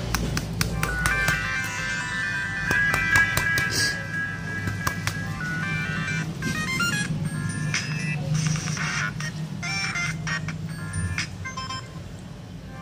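A Samsung Galaxy M20's speaker plays short previews of stock ringtones one after another as each is selected, the melody changing every second or two. There are sharp clicks in the first few seconds.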